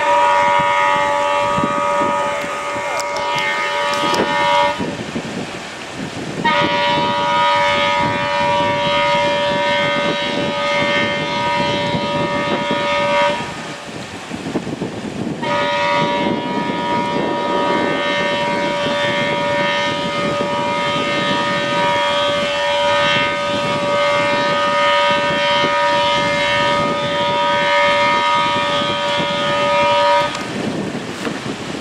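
Vessels' horns in the harbour sounding three long blasts, several pitches together like a chord, with short gaps between, blown as a salute for a funeral.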